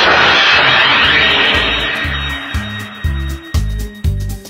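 A whoosh sound effect swells in as the preceding music cuts off and fades away over about two seconds. A music track with a pulsing bass beat, about two beats a second, comes in under it and carries on.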